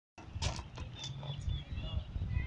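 Birds chirping in short calls over a low wind rumble on the microphone, with a couple of sharp knocks about half a second in.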